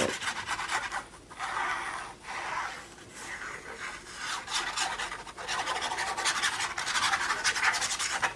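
Foam ink blending tool rubbed back and forth along the edge of a patterned paper panel, inking it: bouts of quick, scratchy rasping strokes.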